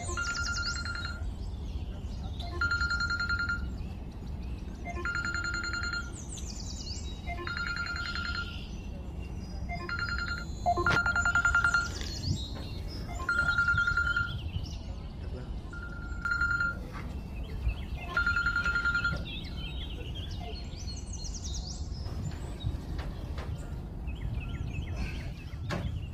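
Mobile phone alarm going off: a high electronic tone sounding in repeated bursts about a second long, every two to three seconds.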